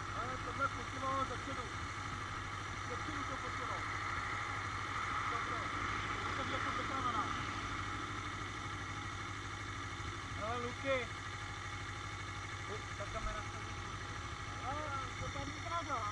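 Steady low hum of a motorcycle engine idling, with faint voices talking in the background.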